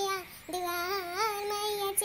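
A high-pitched woman's voice singing a devotional bhajan to Maa Bhavani. She holds long, wavering notes, with a short break for breath a little under half a second in.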